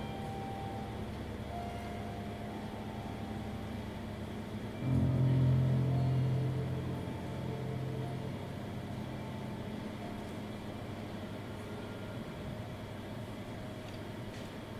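Cello and grand piano playing a quiet, slow passage of long, low held notes. About five seconds in, a deep low note comes in suddenly; it is the loudest moment and fades away over the next few seconds.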